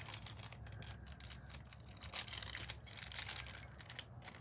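Faint, irregular crinkling and light clicks of a small clear plastic wrapper being handled and peeled open by hand.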